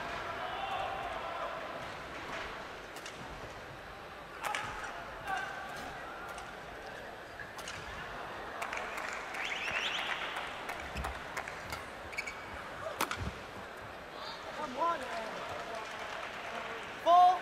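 Indoor badminton arena between rallies: a steady crowd murmur and chatter, broken by a few sharp knocks, with short shoe squeaks on the court near the end.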